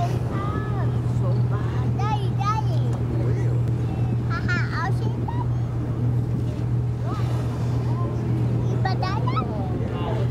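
A boat's engine running with a steady low hum, with snatches of people's voices over it several times.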